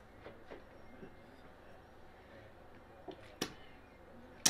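A man sipping beer from a glass: mostly quiet, with a few faint clicks and one sharper click near the end.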